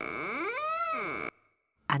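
Creaking-door sound effect as the door opens: one creaky tone that glides up and back down in pitch for about a second and a quarter, then cuts off abruptly.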